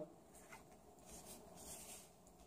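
Faint rustle of a tarot card being turned face up and slid across a cloth-covered table, with a small tick about half a second in.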